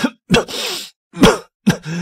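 A man coughing in several short, separate bursts, one of them a harsh rush of breath: an allergic reaction to an industrial-fragrance aromatherapy scent.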